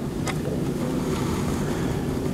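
Steady low rumbling background noise in a lecture hall, with one brief click about a quarter second in.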